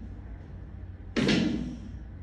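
A single loud thud about a second in, dying away over about half a second.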